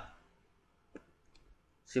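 A pause in a man's speech, holding one faint click about a second in and a few fainter ticks after it; his voice resumes at the very end.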